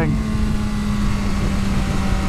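BMW S1000RR's inline-four engine holding steady revs through a bend, its note unchanging, under heavy wind rush.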